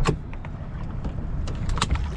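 A wire crab trap being hauled up by its rope alongside a small boat, over a steady low rumble of wind on the microphone. There is a sharp knock at the start and another near the end as the trap comes up to the gunwale.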